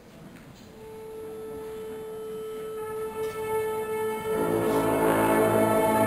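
School orchestra: a single held note sounds, and about four seconds in the rest of the orchestra comes in louder with many sustained notes.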